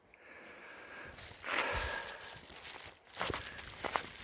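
A few faint footsteps and rustles close to the microphone, with a louder scuff about a second and a half in and a couple of light knocks near the end.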